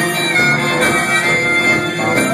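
Amplified blues harmonica played cupped against a vocal microphone, with held notes that bend in pitch, over a live blues band.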